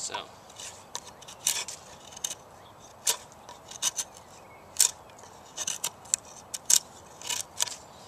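Spyderco Paramilitary 2 folding knife, a full-flat-ground S30V blade, cutting chunks out of a wooden board: a dozen or so sharp, crisp cuts at irregular intervals.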